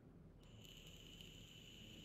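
Near silence with faint room noise. About half a second in, a faint, steady high-pitched tone begins and holds without changing pitch.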